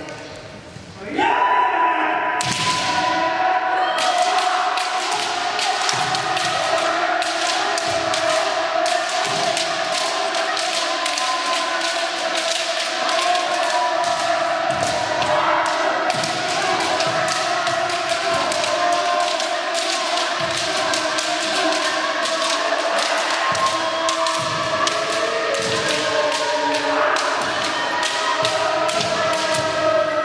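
Group kendo sparring in a wooden-floored sports hall: a dense, fast clatter of bamboo shinai strikes and stamping feet, over many voices shouting kiai at once. It starts suddenly about a second in and keeps up unbroken.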